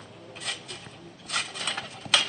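Trampoline mat and springs giving a few soft, noisy thumps as a jumper bounces, then lands on hands and knees.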